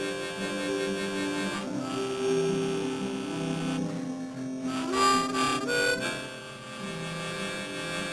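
Solo harmonica playing a slow tune of long held notes and chords, with notes bent upward in pitch a little after five seconds in.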